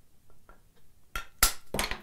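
Small metal hammer tapping a wooden skewed-iron rabbet plane to adjust its setting: about four quick, light, clinking taps in the second half, the second the loudest.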